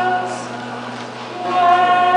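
Two women singing a Sephardic song in Ladino, with viola da gamba and theorbo accompanying. A held note ends just after the start, the voices pause for about a second while the accompaniment carries on softly, and the singing comes back in about a second and a half in.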